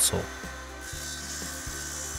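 Saw cutting through an engineered wood floor plank, a steady hiss that starts about a second in.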